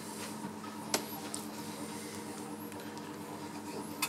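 Quiet room tone with a steady low hum and a single sharp click about a second in.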